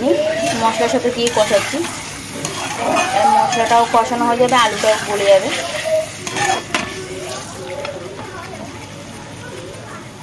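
Spiced potatoes frying and sizzling in an aluminium kadai, with a metal spatula scraping and clicking against the pan as they are stirred during the kosha stage. A voice is heard over it in the first half, and the sizzle carries on more quietly near the end.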